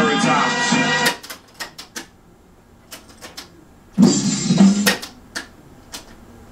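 A hip-hop beat playing from a cassette tape on a boombox deck cuts off abruptly about a second in, followed by clicks of the deck's transport keys; about four seconds in, a short snatch of the beat plays again and is stopped, with more key clicks after it. The tape is being started and stopped to cue it to the first beat of the loop.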